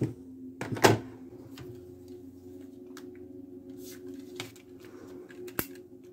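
Light clicks and taps of cardstock and a tape-runner adhesive dispenser being handled, the sharpest click about a second in, with a few smaller ticks later over a faint steady hum.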